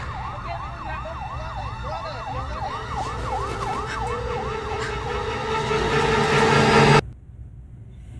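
Emergency siren on a film soundtrack, wailing fast up and down about three times a second over a steady bed of score and low rumble. The whole soundtrack cuts off suddenly about seven seconds in.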